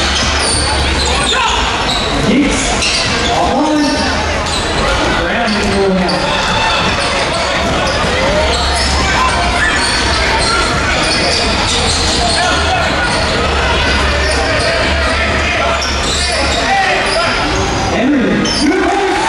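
Basketball bouncing on a hardwood court during a game, under steady crowd chatter that echoes through a large gym.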